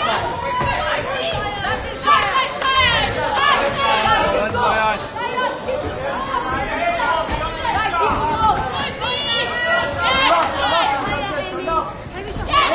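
Crowd of boxing spectators shouting and calling out over one another while a bout is fought, many voices at once with no single voice standing out.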